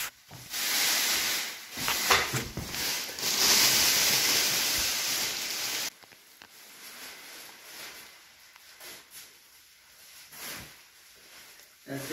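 Thin clear plastic sheeting rustling and crinkling as it is pulled and dragged across a floor. The sound is loud for about six seconds, then cuts off suddenly, leaving faint scattered rustles.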